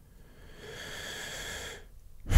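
A man drawing one long breath in close to a studio microphone. It starts about half a second in and stops shortly before the end.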